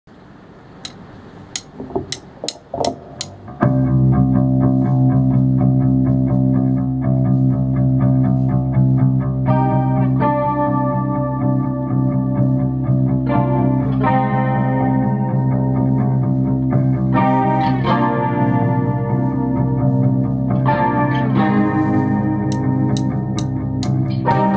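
Instrumental intro of a rock band: a few sharp clicks over a quiet bed, then about four seconds in loud, distorted electric guitar chords with bass come in suddenly and are held, changing every few seconds.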